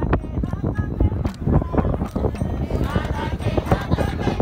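A two-headed hand drum, a madal, played in quick strokes, with crowd voices that rise near the end.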